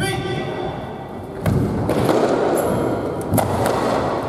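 Sports chanbara bout in a gymnasium hall: a short voiced call at the start, then from about a second and a half in louder shouting with several sharp smacks of the air-filled soft swords.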